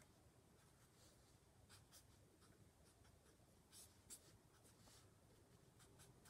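Faint strokes of a felt-tip marker writing on paper: a few short scratches scattered through near silence.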